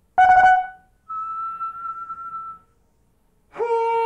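Solo trumpet in a contemporary concert piece. A short loud blast comes first, then a thin, steady high note held for about a second and a half. After a brief silence, a loud lower note begins near the end and is held.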